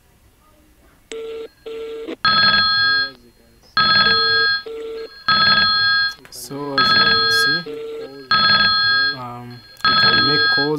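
Incoming-call ringtone of the USB modem's Mobile Partner software on the PC. It rings in loud electronic bursts, each under a second long, repeating about every one and a half seconds. Two short, lower beeps come just before it, about a second in.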